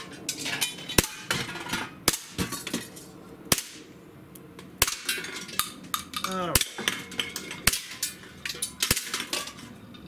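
A Barra 1911 CO2 blowback BB pistol firing about seven shots, roughly one a second, each a sharp crack. BBs strike metal cans and small bottles, which clink and clatter as they are knocked off the shelf.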